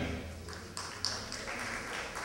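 Quiet hall ambience between announcements: a faint background hum with a few light taps and knocks.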